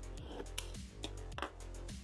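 Quiet background music with a few short, sharp scrapes and clicks: a box cutter slicing open the shrink wrap on a cardboard trading-card box.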